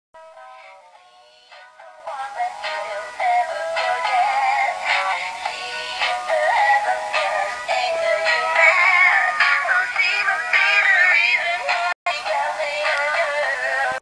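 Swaying Santa Claus novelty toy playing a recorded Christmas song through its small built-in speaker, thin and tinny with no bass. A short, quieter electronic melody opens it for about two seconds, then the louder singing comes in, and the sound cuts out for an instant near the end.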